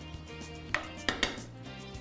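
Wooden spoon stirring rice and butter in a frying pan, with a few sharp knocks of the spoon against the pan in the second half.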